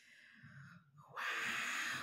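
A woman's long, breathy exhale like a sigh. It starts suddenly about a second in and is louder than the faint noise before it.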